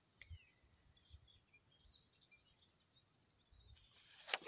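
Near silence, with faint scattered bird chirps and short twittering calls.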